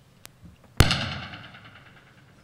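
A faint click, then one sharp bang just under a second in that rings on and dies away over about a second in the hall's reverberation.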